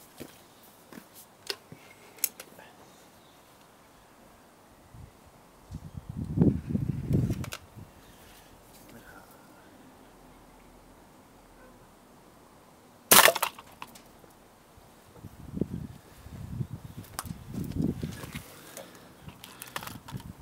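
One sharp crack about two-thirds of the way through: a spring air rifle firing a pellet into a toy bus, the shot striking low on the bus's side. Duller low rumbling noises come before and after it.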